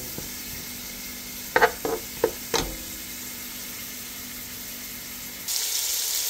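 Crumbled beef sausage frying in a nonstick skillet, a steady sizzle, with a few sharp knocks of the plastic spatula against the pan about two seconds in. Near the end the sizzle turns louder and brighter as the browned meat and sliced onion fry.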